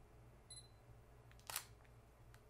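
Sony a6000 taking a flash photo: a short, faint focus-confirmation beep about half a second in, then a single shutter click about a second later.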